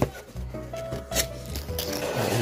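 Background music playing, with a few short scrapes and rustles of a cardboard figure box and its clear plastic tray being slid out; the loudest comes about a second in.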